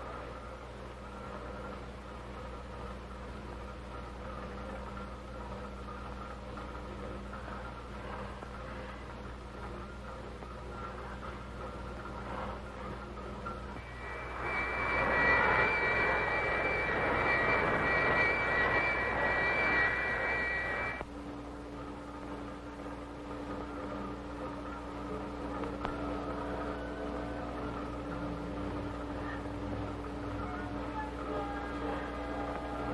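A steady film-soundtrack drone of several held tones. About halfway through, a louder hissing rush with a high ringing tone swells in, holds for about seven seconds and cuts off abruptly, leaving a lower held tone.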